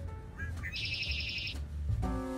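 A perched blackbird singing: a few short rising notes, then a buzzy trill lasting under a second, over faint background music.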